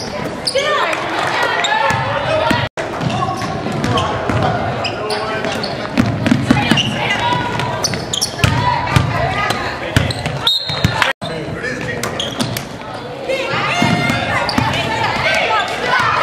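Spectators' voices in a school gym during a basketball game: many people shouting and talking at once, with a basketball bouncing on the hardwood court and other sharp knocks from play. The sound cuts out to silence twice for an instant.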